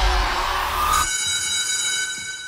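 Trailer sound design: a loud rumbling rise cuts off suddenly about a second in. It leaves a high, steady ringing chord that slowly fades.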